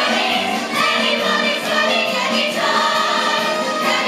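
Stage musical ensemble singing together in chorus with band accompaniment, loud and continuous.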